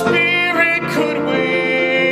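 A man singing a musical-theatre ballad in long held notes, accompanied by a grand piano.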